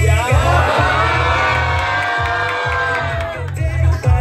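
Dance music with a heavy bass beat, with the audience cheering and whooping loudly over it; the cheering dies down near the end.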